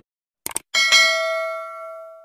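Subscribe-button animation sound effect: a couple of quick mouse clicks about half a second in, then a single bell ding that rings on and fades away.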